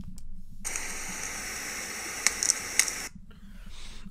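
Trail camera recording played back through computer speakers: a loud, hissy crunching of something large moving through snow, starting about half a second in and cutting off about three seconds in. Near the end come a few sharp cracks, taken for a tree branch breaking or something creaking.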